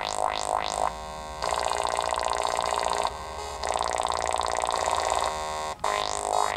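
littleBits Synth Kit modular synthesizer playing a buzzy electronic tone. In the first second it sweeps upward in pitch about three times a second, then holds a sustained drone that turns brighter twice. It cuts out briefly near the end.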